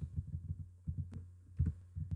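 Low, steady electrical hum under soft, irregular low thuds, with a few sharp computer-mouse clicks about a second in and again near the end as lines of code are selected and copied.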